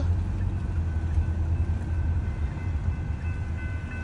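Steady low rumble inside a stopped car, with a railroad crossing's warning bell starting to ring faintly about a second in and growing fuller near the end as the crossing activates for an approaching train.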